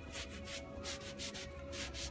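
Folded gauze pad rubbing gel stain over a painted picture frame's molded trim, in quick back-and-forth scrubbing strokes of about four a second, with a faint steady hum beneath.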